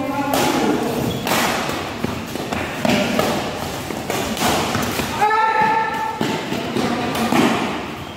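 Badminton rally in a reverberant hall: racket strikes on the shuttlecock and thuds of players' feet on the court, sharp hits coming roughly once a second.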